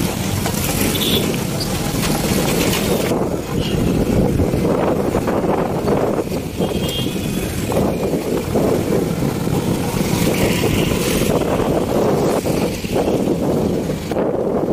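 Rumble of a moving vehicle on a rough, rutted dirt road, with wind buffeting the microphone. The wind hiss is strongest for about the first three seconds and again a little before the end.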